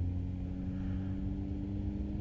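Car engine and road noise heard from inside the cabin while driving at a steady speed: a steady low hum with no change in pitch.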